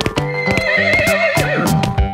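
A single horse whinny, wavering and falling in pitch near its end, over the music of a children's song.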